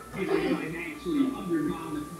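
Indistinct speech in the background, with faint music under it.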